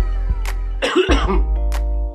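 A man coughing into his fist about a second in, a short harsh burst, over background music with a steady low bass.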